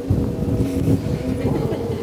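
Wind buffeting the microphone as a dense, uneven low rumble, with music in steady held notes underneath.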